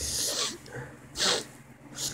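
A person's breath between sentences: a breathy exhale at the start and a short, sharp intake of breath through the nose just over a second in.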